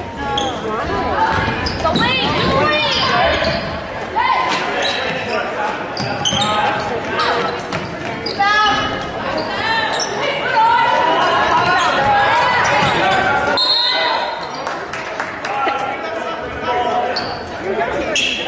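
Basketball game sounds in a large gymnasium: a ball bouncing on the hardwood court amid players and spectators calling out, all echoing in the hall.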